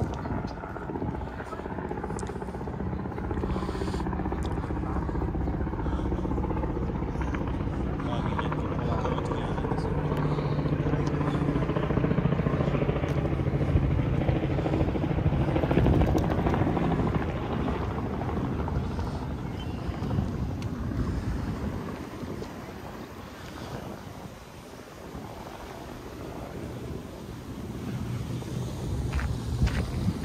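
Low-flying aircraft passing overhead: a steady low engine drone that grows louder to a peak around the middle, then fades away over the following seconds.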